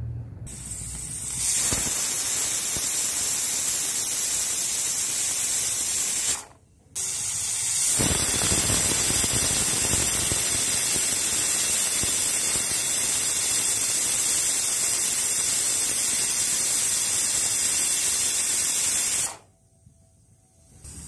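Hawkins pressure cooker whistling: steam hissing out under the lifted weight valve, a loud high hiss in two long releases with a short silent break between them. These are the two whistles that tell the pulao rice inside has reached pressure and is cooked.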